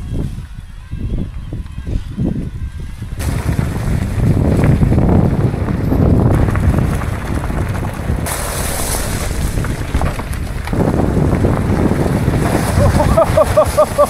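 Wind buffeting the microphone of a rider-worn camera over the rumble of mountain bike tyres rolling on a gravel track. The noise is quieter for the first three seconds, then louder and steady, with a hissier stretch in the middle.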